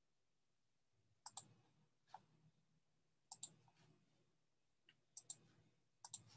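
Faint clicks of a computer mouse, several of them quick pairs: three double clicks and two single clicks spread over a few seconds, with near silence between.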